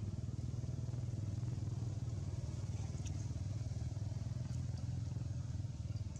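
An engine idling steadily nearby, a low even rumble.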